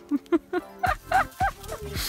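A Samoyed giving a few short, whiny yelps and barks, the clearest three about a second in, over background music.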